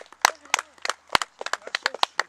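A few spectators clapping, sharp irregular handclaps at several a second, applauding a throw.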